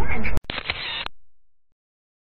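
A photo booth's camera-shutter sound plays once, a little under half a second in, right after the room sound cuts off abruptly; it lasts about two thirds of a second and fades away within another half second.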